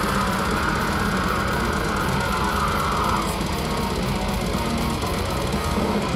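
Death metal band playing live: distorted electric guitars, bass and drums in a dense, unbroken wall of sound.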